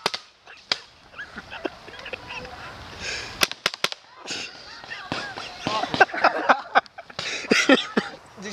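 Paintball markers firing: a couple of sharp pops in the first second, then a quick run of about four pops about three and a half seconds in. Voices shout through the second half.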